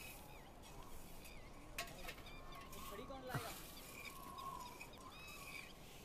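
Faint outdoor ambience with small birds chirping repeatedly, and a couple of short rising calls around the second and third seconds.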